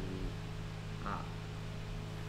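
Steady low hum and hiss of the recording's background noise, with a short spoken 'ah' about a second in.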